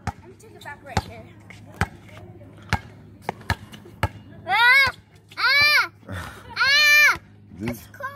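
A basketball being dribbled on a hard outdoor court, bouncing about once a second. In the second half come three short, loud, high-pitched sounds that rise and fall in pitch.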